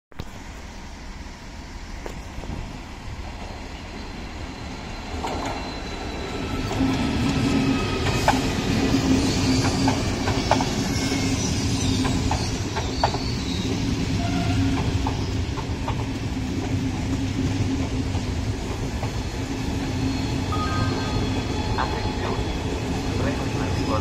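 Italo high-speed train rolling into the station. Its running noise grows over the first several seconds and then holds steady, with thin high squeals and a few sharp clicks from the wheels on the rails.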